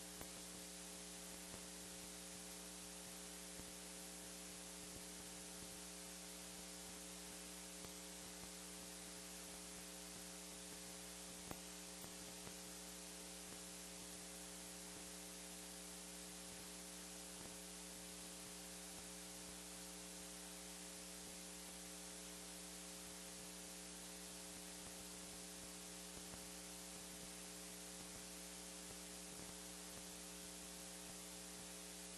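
Faint steady electrical mains hum over a hiss, with a few faint clicks, the loudest about a third of the way in.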